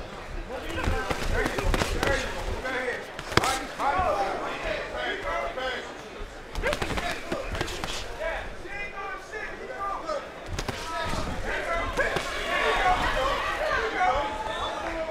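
Boxing gloves landing in sharp slaps on an opponent during an exchange, a few standing out clearly, under shouting voices from the crowd and corners.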